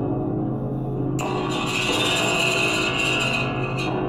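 A metal awning played as a percussion instrument, its structure resonating in held low ringing tones. About a second in, a bright, high ringing tone enters abruptly and holds, then cuts off just before the end.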